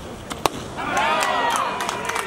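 A baseball pitch smacks into the catcher's mitt with one sharp pop about half a second in. Then several voices shout and cheer at once as the pitch ends the inning with a third out.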